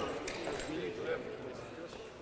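Faint voices of players talking in a sports hall.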